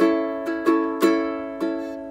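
Ukulele strumming one held chord: a strong strum at the start, then about five lighter strokes, each left to ring and fade.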